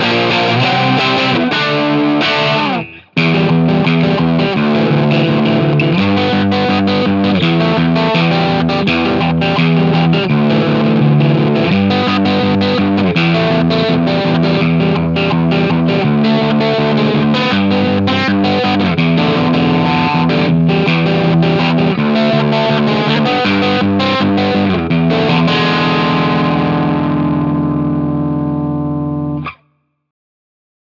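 Harley Benton DC Junior single-pickup electric guitar played with distortion, strumming chords, with a brief stop about three seconds in. Near the end a final chord rings out and is cut off suddenly.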